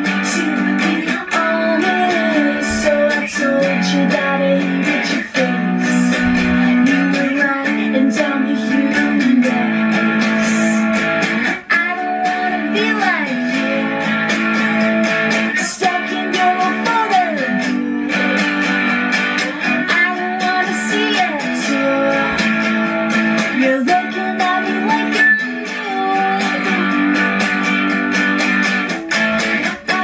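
Electric guitar strummed steadily with a woman singing over it: a live solo slacker-pop song performance.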